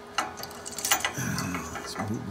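Light clicks and clinks of hard parts being handled on a workbench, a few sharp ones in the first second.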